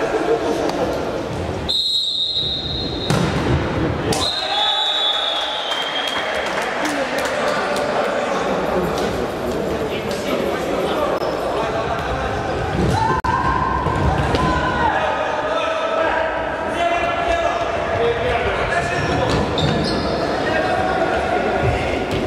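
Futsal ball being kicked and bouncing on a wooden sports-hall floor, repeated sharp knocks that echo in the hall. A referee's whistle blast sounds about two seconds in.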